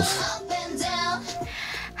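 A young woman singing a vocal take into a studio microphone in a recording booth, with a short laugh from a man at the start.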